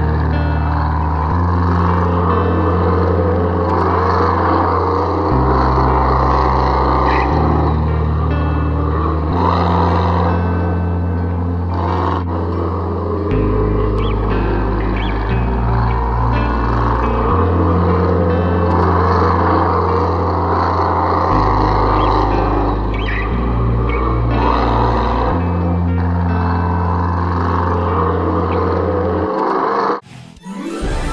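Background music under the closing credits, with a bass line that changes note every one to two seconds over a dense, steady upper layer. It cuts off shortly before the end.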